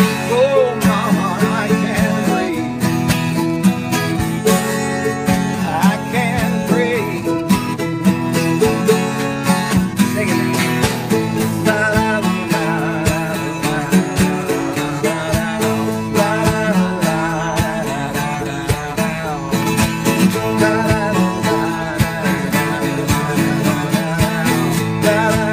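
Live acoustic band playing an instrumental passage: strummed acoustic guitar, a small high-voiced plucked string instrument picking quick melodic runs, and a Pearl drum kit keeping a steady beat.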